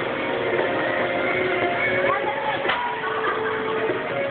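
Music with long held notes, with voices mixed in.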